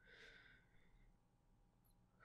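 Near silence, with a faint exhaled breath from the male voice in the first half-second.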